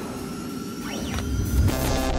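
Synthesized sting for an animated logo: a low rumble under held electronic tones, with a pitch sweep about halfway through and a whooshing swell building near the end.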